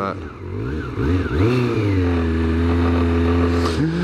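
Motorcycle engine pulling away: revs rise over the first second or so, then hold steady, and drop off just before the end.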